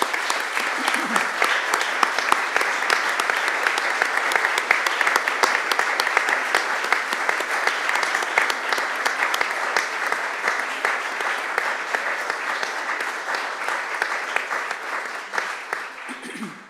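Audience applauding steadily for about sixteen seconds, dense hand claps that begin just before and fade out right at the end.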